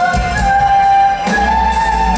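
Female lead vocalist of a symphonic metal band singing live, holding long notes that step up in pitch twice, over drums and guitars.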